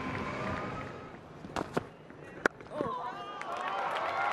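Faint murmur of a stadium crowd on a cricket broadcast, with faint voices, and three short sharp knocks around the middle.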